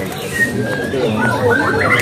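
Caged songbirds calling with short high whistles over the murmur of men talking nearby.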